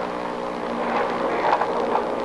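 Field recording of an armed raid: a steady hum with scattered sharp cracks, the clearest about one and a half seconds in, typical of gunshots.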